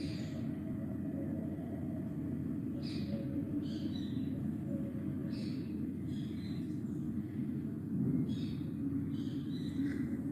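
Steady low background hum with a faint steady tone, and a scattering of faint, brief higher-pitched sounds.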